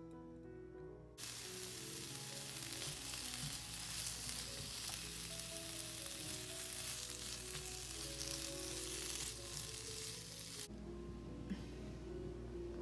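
Sliced bell peppers sizzling in hot oil in a frying pan, the sizzle starting abruptly about a second in and cutting off suddenly near the end. Soft background music plays underneath.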